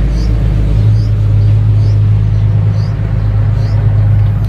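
A steady low rumble, with a small bird giving a short high chirp about twice a second.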